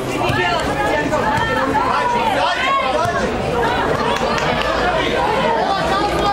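Several spectators talking and calling out at once, with overlapping voices close to the microphone and a louder call about halfway through.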